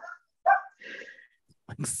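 A dog barks once, short and sharp, about half a second in, followed by a fainter, breathier sound.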